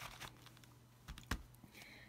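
A few faint clicks and taps of craft tools being handled on a desk, with one sharper tap about a second and a third in, over a faint steady low hum.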